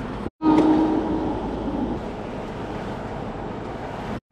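Ford camper van on the move, heard from inside the cab: steady engine and road noise with wind through the open side window. The sound cuts in after a brief dropout just under half a second in, with a steady hum over the first second.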